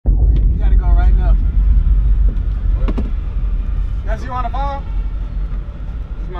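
Steady low rumble inside a passenger van's cabin, with brief snatches of people's voices about a second in and again around four seconds in.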